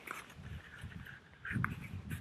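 Faint rubbing and sliding of a cardboard product box as its inner tray is worked out by hand, over a low rumble, with a brief low sound about one and a half seconds in.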